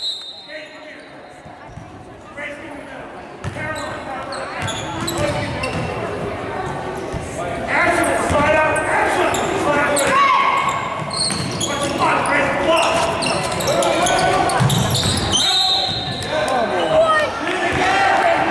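Gym crowd and players talking over one another in a large echoing hall, with a basketball bouncing on the hardwood court. The voices grow louder about halfway through.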